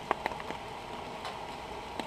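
Faint, steady background ambience with a few light clicks in the first half second.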